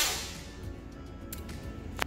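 A breath blown hard through a surgical face mask, which puts out a birthday candle, fades away just after the start. The rest is faint background music, with a single light tick about halfway through.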